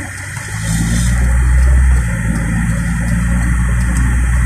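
Car engine and road rumble heard from inside the cabin while driving. It grows louder a little over half a second in, as the car pulls forward.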